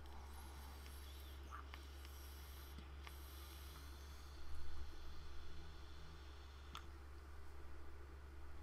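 A man drawing faintly on an e-cigarette fitted with a Mini BCC clearomiser tank, then breathing out the vapour in a soft rush about four and a half seconds in.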